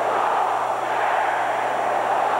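Steady murmur of a large stadium crowd, with a faint low electrical hum underneath.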